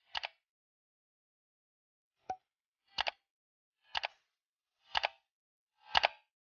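Clock-like countdown-timer ticks: short double-stroke clicks, one just after the start and another a little after two seconds, then a steady tick every second through the second half.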